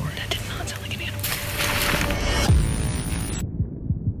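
Horror-trailer sound design: a low throbbing drone under a swelling rush of noise that ends in a falling bass hit about two and a half seconds in, then cuts off suddenly near the end.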